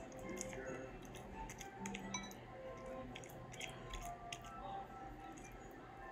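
Soft background music with held notes, over faint sticky clicks and squelches from hands kneading and pulling apart glue-and-Sta-Flo slime that is still slightly sticky.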